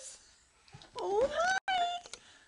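Infant's high-pitched squealing vocalization about a second in: one call that rises in pitch and is then held, with a brief break.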